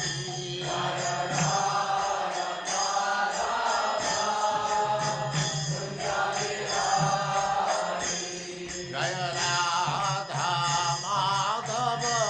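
Devotional mantra chanting with musical accompaniment: a voice holds long sung notes, each about one to two seconds, over a low continuous accompaniment.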